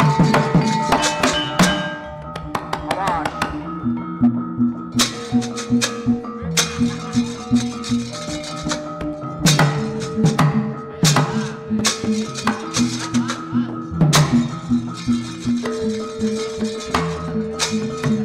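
Accompaniment for a wayang puppet scene: held tones stepping from note to note over a steady beat. Sharp wooden knocks cut through it, in a quick run at the start and then singly every few seconds, as the puppets are moved.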